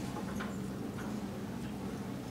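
Barn room tone: a steady low hum with a couple of faint short clicks about half a second and a second in.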